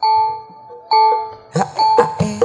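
Campursari band starting a song: two ringing, bell-like struck notes, then drum strokes and further notes come in with a quick rhythm about one and a half seconds in.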